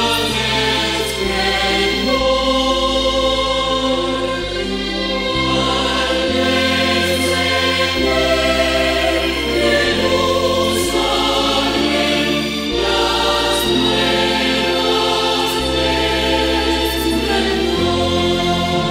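Church choir singing a hymn over a steady instrumental accompaniment, its bass line moving to a new note every second or two.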